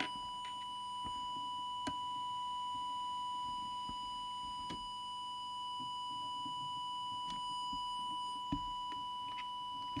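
Steady single-pitched whistle of an audio test tone from an audio oscillator. It modulates a CB radio's transmitter while the deviation preset is being set, the deviation having been found very low. A few faint clicks come from the adjustment.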